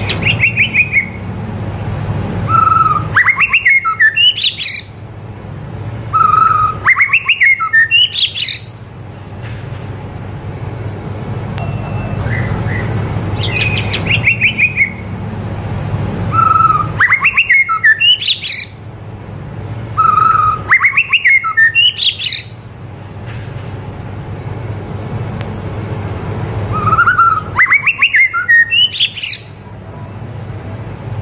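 A caged white-rumped shama (murai batu) singing loudly. It gives a loud song phrase every few seconds, each a quick run of clear notes that climbs from low whistles to very high sweeps. A steady low hum runs underneath.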